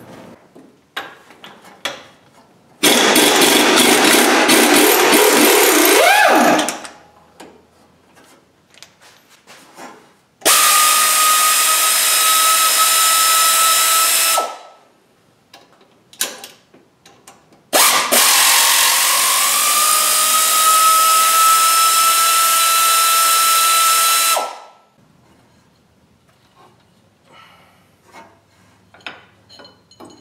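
Handheld power tool running in three bursts of a few seconds each, the last one spinning up with a rising whine, as the crankshaft pulley is unbolted from the harmonic balancer. Faint clinks of parts and tools come in the gaps.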